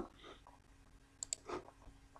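Two faint computer mouse clicks in quick succession a little over a second in, with a soft short sound just after, over low room noise.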